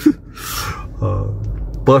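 A man's breathy exhale, a heavy sigh, then a low drawn-out hum for about a second.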